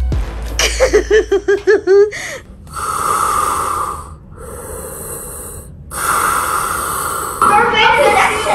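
Darth Vader's respirator breathing sound effect: two long, hissing mechanical breaths with a pause between them.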